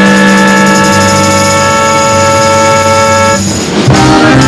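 A jazz-rock band with saxophones and electric bass holds one long sustained chord, the bass moving underneath, then cuts off about three and a half seconds in; the full band comes back in busier just before the end.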